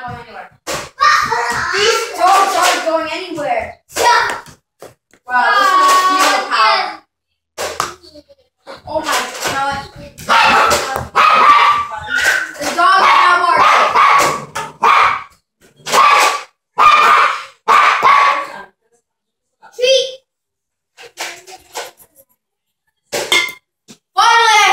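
A boy's voice talking and exclaiming in bursts, too unclear to make out, with a few sharp smacks in between.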